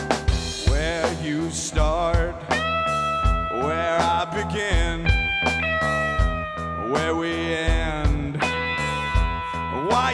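A live blues band plays: an electric guitar carries the lead with bent, sustained notes and vibrato over bass guitar and a steady drum beat.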